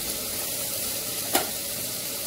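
Food sizzling steadily in hot oil in a frying pan, with a single sharp click about midway through.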